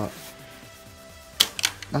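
Background music with steady held tones. About a second and a half in there are three sharp plastic clicks in quick succession, the first the loudest, from a marker being handled in the pencil pouch of an XD Design Bobby backpack.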